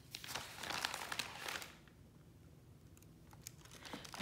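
Sheet of parchment (baking) paper crinkling as gloved hands pick it up and handle it, a burst of crackly rustling for the first couple of seconds that then dies down to a few faint ticks.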